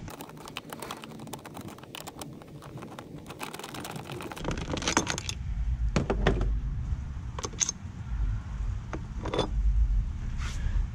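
Hand ratchet clicking as it backs off the 10 mm nuts on a scooter's seat hinge: a quick run of fine clicks for about four seconds, then a few separate clicks and knocks over a low rumble.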